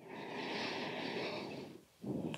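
A woman's long audible breath in ujjayi style, a steady ocean-like hiss through the throat lasting nearly two seconds, fading out just before the end.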